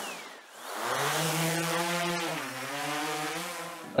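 Drone propellers buzzing, a steady whine that dips in pitch about two seconds in and then recovers, after a short falling whistle at the start.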